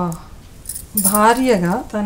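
A woman speaking, with a brief light metallic jingle about halfway through.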